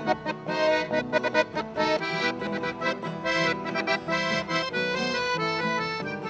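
Hoyden piano accordion playing the instrumental introduction to a sertanejo ballad. It runs through quick melodic notes for about the first two seconds, then settles into longer held notes.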